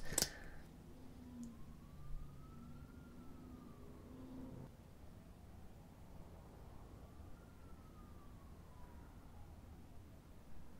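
Faint siren wailing: one tone slowly rising and falling, twice over, above quiet room tone.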